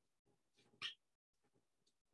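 Near silence: faint room tone, with one short sharp noise a little under a second in.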